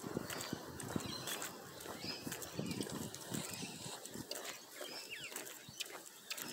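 Irregular footsteps and phone handling knocks from someone walking while filming, with a few short bird chirps.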